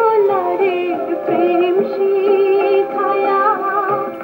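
A woman singing an old Bengali film song: an ornamented melody with held, wavering notes, over instrumental accompaniment.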